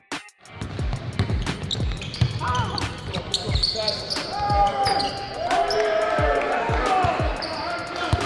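Basketballs bouncing on a gym floor, repeated strikes at an uneven pace, with players' voices in the background of a large indoor hall.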